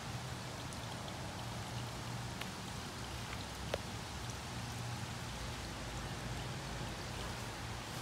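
Steady outdoor background noise, an even hiss with a faint low hum, with a few faint ticks and one sharper click a little before the midpoint.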